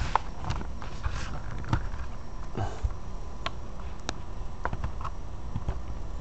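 Scattered small clicks and taps of hands handling a plastic RC radio transmitter as its rechargeable battery plug is pushed into its slot.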